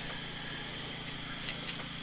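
Steady low mechanical hum with a faint high whine, and two faint clicks about one and a half seconds in.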